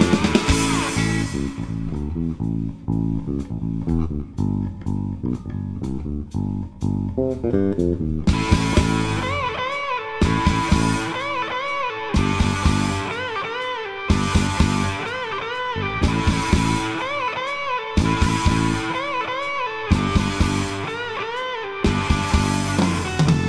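Blues-rock band recording. For about the first eight seconds a bass guitar riff carries the music with little above it. Then the full band comes in with drums and an electric guitar lead playing a repeating phrase of bent notes.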